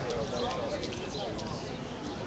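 Indistinct chatter of several people talking at once, overlapping voices with no single clear speaker.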